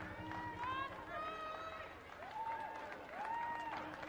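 High-pitched excited shouts and cheers of celebrating voices after a goal, with two long held calls in the second half, over open-air stadium background noise.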